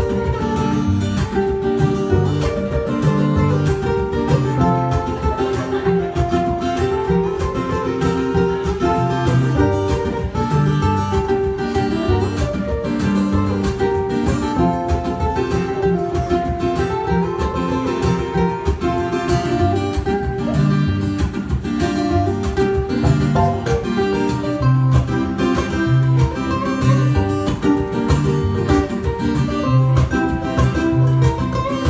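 A ukulele and an acoustic guitar played together live, a steady stream of quick picked notes over chords.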